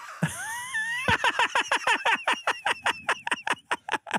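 A man's high-pitched laugh: a rising, wavering squeal for about the first second, then a fast stuttering run of about eight pulses a second that stops just before the end.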